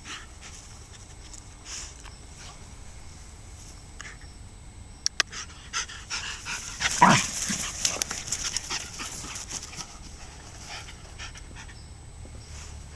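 Two Jack Russell-type terriers playing, panting, with one short loud bark about seven seconds in.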